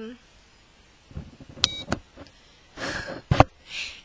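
ThermaClear acne treatment device giving one short, high-pitched beep about a second and a half in, as its button is pushed and it fires a heat pulse into the skin. A sharp click, the loudest sound, follows near the end.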